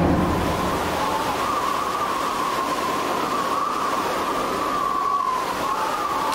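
Steady rushing noise with a faint tone that wavers slowly around one pitch.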